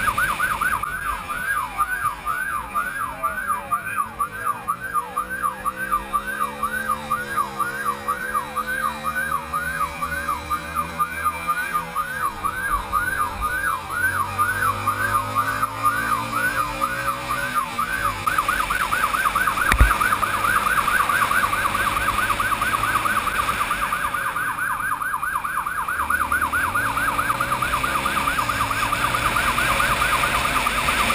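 Police motorcycle siren sweeping up and down a few times a second, switching to a faster warble about eighteen seconds in, over the motorcycle's engine rising in pitch as it accelerates. A single sharp knock about twenty seconds in.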